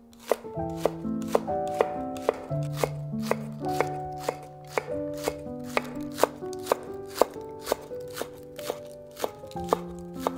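Chef's knife chopping green onions on a wooden cutting board: quick, even strikes about three a second. Background music with held notes runs underneath.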